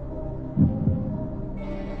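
Suspense sound bed under a quiz countdown timer: a low, steady droning tone with a deep heartbeat-like thump about half a second in.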